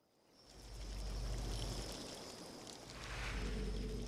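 A low, steady rumble with a soft hiss over it fades in about half a second in, with a faint thin high tone running through it: a quiet ambient sound bed on a film soundtrack.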